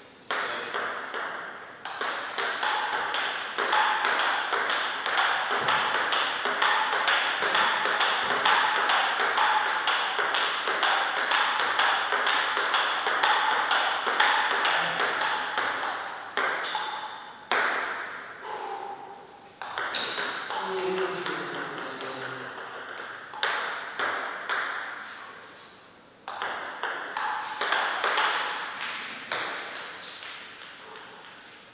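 Table tennis ball clicking back and forth off the paddles and the table in quick rallies of several hits a second, with a couple of short pauses between points.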